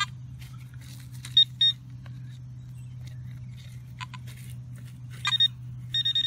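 Handheld metal-detecting pinpointer probe giving short high-pitched beeps as it is worked through loose dug soil, sounding off on a small metal target: two quick beeps about a second and a half in and a rapid stutter of beeps near the end, over a steady low hum.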